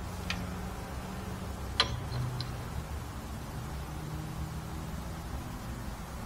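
Light metallic clicks as a magnetic digital angle finder is moved and stuck onto a driveshaft yoke: one sharp click about two seconds in, with a couple of fainter ticks around it. A faint steady low hum runs underneath.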